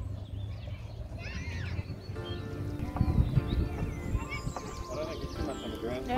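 Small birds chirping over a low rumble of wind on the microphone, then a person's voice held on steady pitches from about two seconds in.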